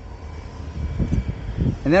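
Power liftgate of a 2023 Jeep Grand Cherokee Summit 4xe closing under its motor, a faint steady whine, under a low rumble of wind on the microphone.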